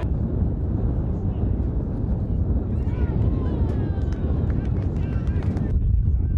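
Wind buffeting the microphone as a steady low rumble, with footballers' distant shouts faintly through it about halfway in.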